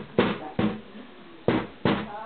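Hand percussion knocking out a slow rap beat: two quick knocks about 0.4 s apart, a pause of nearly a second, then two more.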